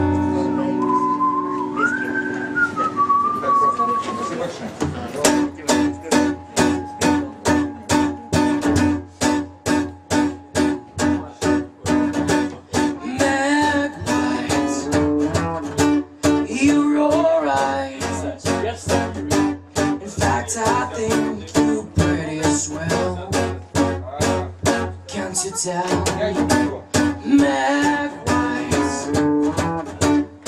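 A few whistled notes, then an acoustic guitar strummed in a steady rhythm from about five seconds in. A voice sings over the guitar from about a dozen seconds in, in a live solo acoustic song.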